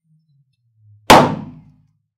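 A white latex balloon bursting: one sharp, loud pop about a second in that dies away within half a second.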